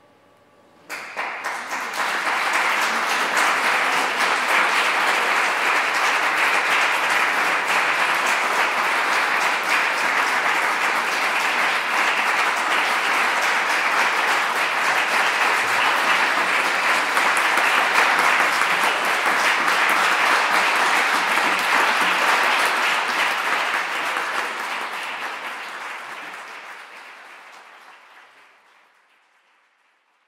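Audience applause: dense, steady clapping from many hands that breaks out suddenly about a second in, then fades out over the last five seconds or so.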